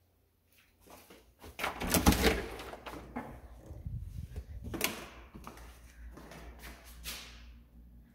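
A house door being unlatched and opened: clicks and knocks, loudest about two seconds in, with a few lighter knocks later.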